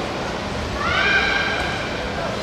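A single shrill shout from a person, rising at first and then held for about a second, over the steady hum of the hall.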